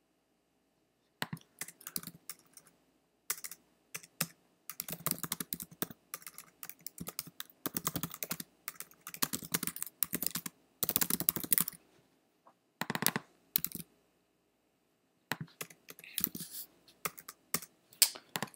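Typing on a computer keyboard: irregular runs of key clicks with a couple of short pauses, as a sentence is typed out.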